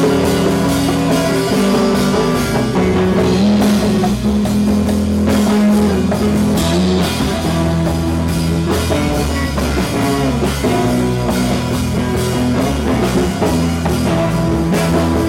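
Live rock band playing an instrumental passage: electric guitar over a drum kit, with no singing.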